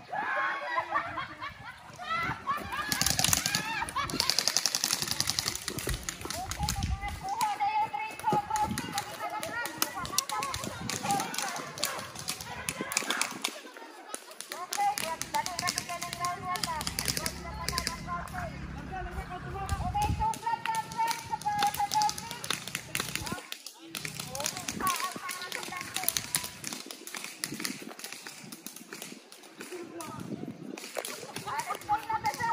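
Voices of several people calling out across an open field, with many sharp clicks scattered through, including a quick run of ticks a few seconds in.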